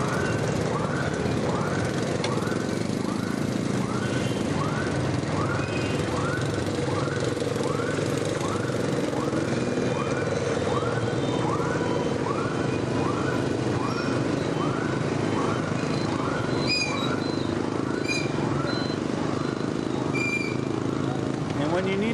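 Motorbike riding in traffic: steady engine and road noise with an electronic chirp repeating about one and a half times a second, typical of a motor scooter's turn-signal beeper left on ahead of a turn. A few short high beeps sound near the end.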